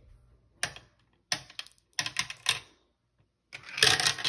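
Marbles clicking against the hard plastic of a marble run: about five short separate clicks as they are set in place, then near the end a continuous rattling as they are released and roll down the plastic track.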